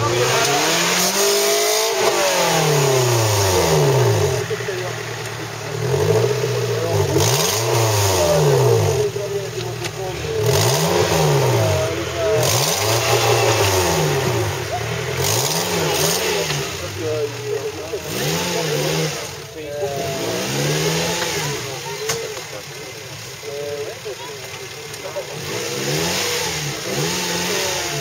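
Off-road 4x4's engine revved hard again and again, its pitch swelling up and dropping back every second or two, as it claws up a steep dirt bank with the tyres spinning in the loose soil.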